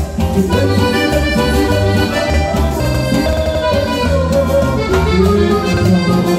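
Live band playing an instrumental passage: a piano accordion leads the melody over electric bass and timbales with a steady dance beat.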